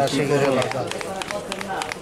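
A man's voice briefly, then rapid light clicks, about eight a second, as a plastic bottle is shaken and tapped over a jar of cut guava.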